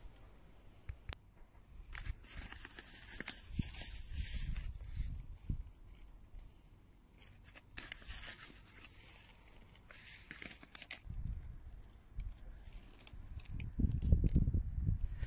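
Dry leaves and hay mulch rustling and crackling in several short bursts as they are moved by hand, with low rumbles in between.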